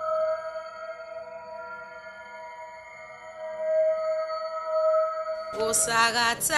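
Film background score of sustained, droning held tones. About five and a half seconds in, a singing or chanting voice comes in over it, louder.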